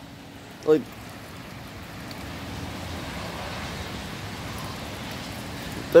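Steady rain falling, an even hiss that swells slightly through the middle.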